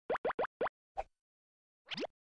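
Cartoon pop sound effects: four quick pops, each rising in pitch, a softer pop at about a second, then a longer rising pop near the end.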